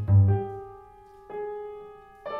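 Grand piano playing slow chords in a classical piece, struck about a second apart and left to ring out and fade. A low note dies away in the first half-second.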